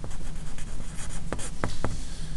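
Pencil writing on paper: scratchy strokes, with a few sharp taps in the second half as the tip lands and lifts.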